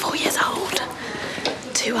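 A woman speaking in a whisper, close to the microphone.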